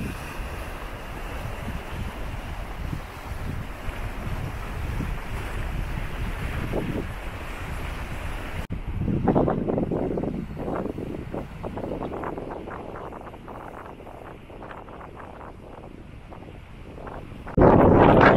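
Wind rushing over the microphone with surf washing against coastal rocks. About halfway through it cuts to gustier wind buffeting the microphone.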